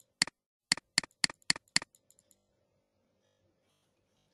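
Computer mouse button clicking six times in about a second and a half, the clicks roughly a quarter second apart, over a faint steady hum.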